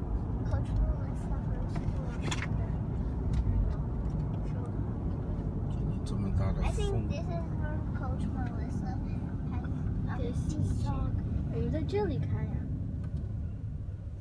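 Road and engine noise inside a moving car's cabin, a steady low rumble, with faint voices coming and going over it.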